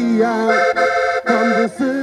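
Accordion playing a traditional Portuguese folk accompaniment, with held chords through the middle of the passage.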